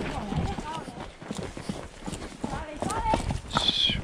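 Several horses' hooves clip-clopping as they walk down a stony dirt trail, the filming rider's own horse loudest. A short, high, falling whistle comes near the end.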